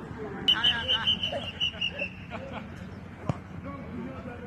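Voices on a football pitch with a quick row of short, high chirping notes in the first two seconds, and a single sharp knock a little after three seconds.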